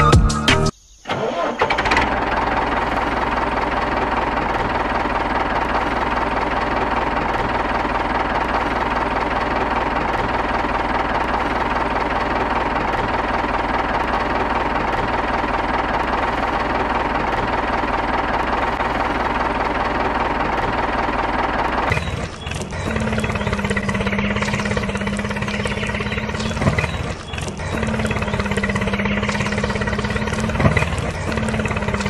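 Mini tractor's engine running steadily as it hauls a loaded trailer, after a short burst of music ends about a second in. About 22 seconds in the engine sound changes to a lower, steady pitched hum that runs on.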